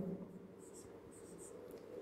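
Marker pen writing on a whiteboard: a few short, faint strokes.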